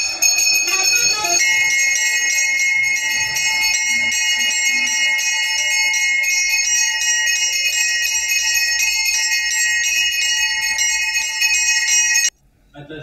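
Brass temple hand bell (ghanta) rung rapidly and without a break during a puja, a bright, high, continuous ringing.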